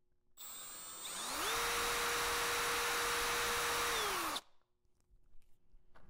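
Power drill spinning a drill bit free in a half-inch-shaft drill extension, with no load. It starts at low speed, the motor whine climbs as it speeds up about a second in, holds steady, then winds down and stops well before the end.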